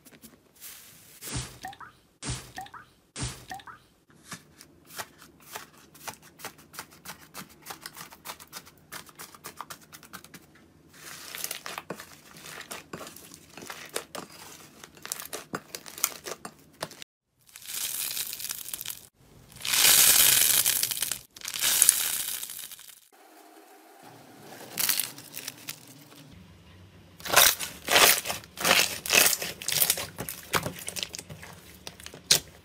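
Hands pressing, squeezing and stretching slime: long runs of small crackling pops and clicks, with louder stretches of sticky tearing and squishing about two-thirds of the way through and again near the end.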